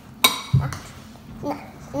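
A metal measuring spoon clinks once against a glass bowl with a short ring, then a dull knock follows.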